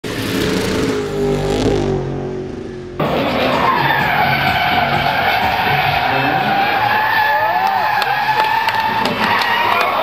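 Drift car sliding through a corner: the tyres squeal with a wavering pitch over the noise of the engine and the slide. A lower droning sound fills the first three seconds and cuts off suddenly.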